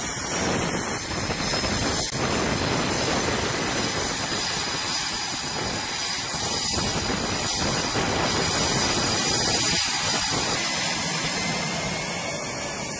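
Jet aircraft engines running on a carrier flight deck: a loud, steady rush of noise with a high turbine whine on top.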